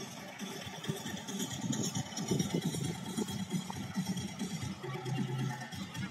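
Distant road traffic: a heavy truck's engine and tyres passing along the highway, an uneven low rumble with a light hiss.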